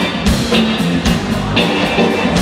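Live band playing instrumentally: electric guitar, electric bass and drum kit, with a steady drum beat under the bass line and guitar.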